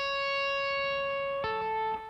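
An electric guitar note tapped at the 14th fret of the B string (C#) rings steadily, then is pulled off to the 10th fret (A) about a second and a half in, stepping the pitch down.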